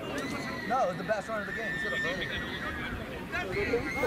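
Men's voices calling out on an open rugby pitch, over a long, high, slightly falling tone held for nearly three seconds.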